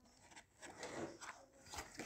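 Faint rustling and scraping of a cardboard packaging tray and its plastic-wrapped contents being handled, with a few small clicks in the second half.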